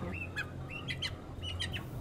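Young Lương Phượng pullets, about 60 days old, giving a series of short, high, upward-rising chirps, several in quick succession, over a steady low hum.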